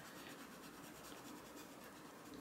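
Faint, steady scratching of a coloured pencil shading on paper.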